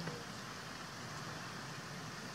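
Steady outdoor background noise, a faint even hiss with no distinct sounds standing out.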